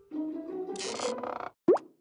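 Light comic background music added in editing, with a brief swish partway through. Near the end comes a quick upward-gliding cartoon 'plop' sound effect, the loudest moment, after which the sound cuts off.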